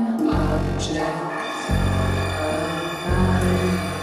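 Live electronic band music: deep, sustained synthesizer bass notes that change about every second and a half, under held high tones.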